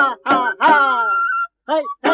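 Traditional Rabha folk song: short falling vocal phrases one after another over a steady held note, with a brief break about one and a half seconds in.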